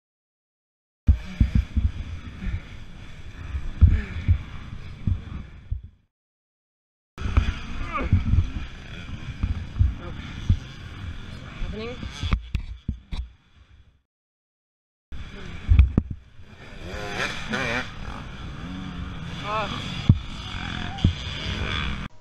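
Helmet-camera sound in three short clips cut apart by silence: low rumbling buffeting and knocks on the microphone, with a man's muffled voice over it.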